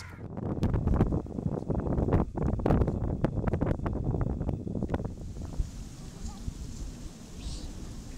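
Wind buffeting the microphone on an open beach, a low rumble broken by irregular scuffs and knocks for the first five seconds or so, then a softer, steadier hiss.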